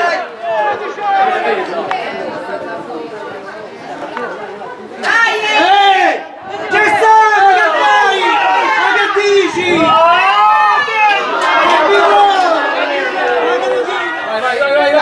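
Several voices of players and spectators shouting and calling over one another during a football match, rising sharply about five seconds in and staying loud.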